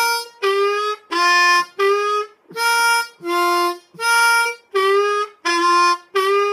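Diatonic blues harmonica playing a fast repeated pattern of short, separated notes, a little under two a second: draw four, blow four, draw three bent half a step and draw two, with several notes bent in pitch.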